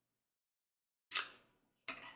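Plastic parts of a mini keyboard vacuum knocking together as a brush attachment is fitted: a sharp plastic click about a second in and another near the end.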